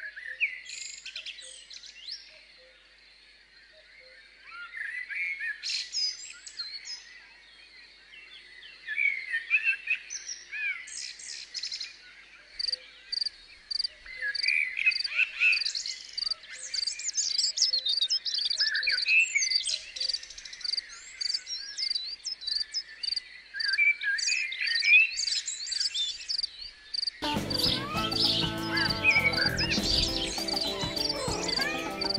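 Small birds chirping and singing over a steady high insect drone, with one high chirp repeating about twice a second from midway on. Music comes in near the end.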